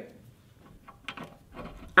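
A few faint clicks of a plug lead being handled and pushed into a power supply's socket, about a second in and again near the end.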